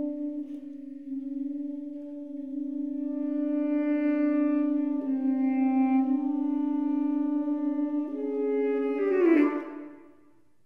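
Two tenor saxophones in a duet, holding long sustained notes against each other: one steady low note underneath while the upper part moves to new pitches. Near the end the sound swells, a note slides downward with a rough, noisy edge, and both stop.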